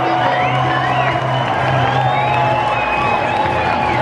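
Stadium crowd cheering and whooping over music from the public-address system, celebrating a walk-off win.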